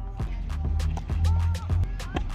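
Background music with a low bass line and a few soft higher notes.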